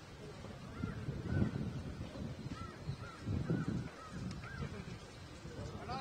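Short, repeated bird calls, each a brief rising-and-falling note, sounding every half second or so over a steady low rumbling noise.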